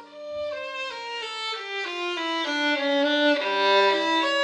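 Bowed string music, a violin to the fore, playing a melody of held notes that step from one to the next, with a lower note sounding under it.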